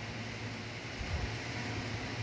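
Steady room tone: an even hiss with a low hum underneath, and a soft low bump about a second in.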